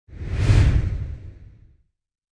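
A whoosh sound effect with a deep rumble underneath, swelling quickly and fading out over about a second and a half: the intro sting for an animated company logo.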